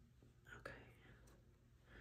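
Near silence: a faint whisper or mutter and a soft click or two about half a second in, as small press-on nails are handled on a table.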